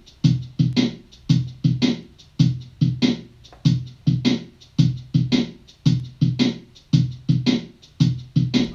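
A looper pedal's built-in drum machine playing a steady 6/8 pattern: repeating groups of three drum hits, a low kick and brighter snare-like strikes, about one group a second.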